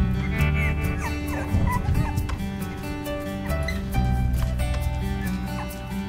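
English bulldog puppies whining in short, high, wavering squeals during the first couple of seconds, over steady background music.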